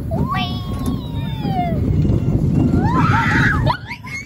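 Small roller coaster car rumbling along its steel track, with a rider letting out a long, falling scream about a second in and a run of short shrieks near the end. The rumble of the ride drops off sharply just before the end.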